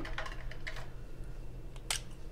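Fingers and fingernail picking at a stuck sticker on a planner page: a few light clicks and taps, then a sharper click near the end.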